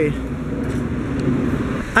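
Street traffic noise, a car going by, heard as a steady rushing noise.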